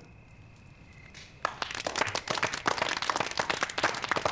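A brief hush, then a small group of people clapping their hands, beginning about a second and a half in and carrying on as dense, steady applause.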